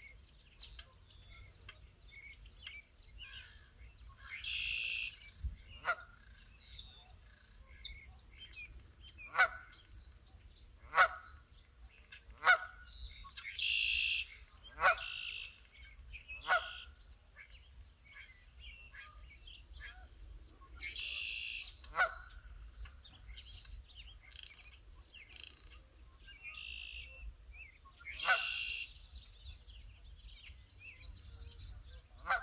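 Geese honking: a dozen or so separate calls spaced irregularly, some dropping sharply in pitch. Thin high chirps from smaller birds come near the start and again after about twenty seconds.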